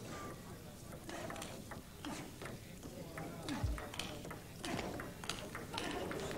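Table tennis rally: the celluloid ball clicks sharply off the bats and the table in a quick, uneven series that runs for several seconds.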